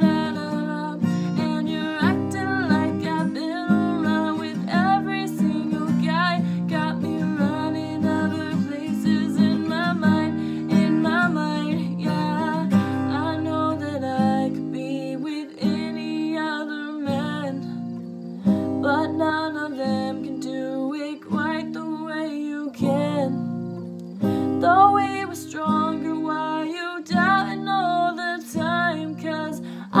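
A woman singing while strumming an acoustic guitar, the voice breaking off briefly between lines.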